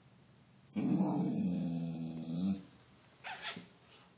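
Scottish terrier giving a long growl about a second in, then a shorter one: a warning growl at a deer in the yard.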